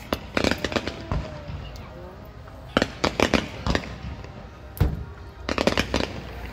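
Fireworks going off in volleys of sharp bangs and crackling pops, coming in clusters every second or two, with the densest bursts about three seconds in and near the end.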